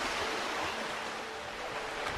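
Surf washing on a beach: a steady rush of water noise with a faint held tone underneath.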